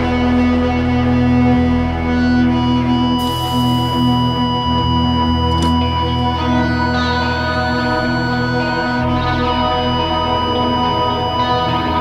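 A rock band playing live: electric guitars holding sustained, droning notes with effects, over low bass notes that shift every few seconds.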